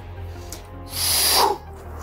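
Background music with a whoosh sound effect about a second in: a short burst of hiss that ends in a falling tone.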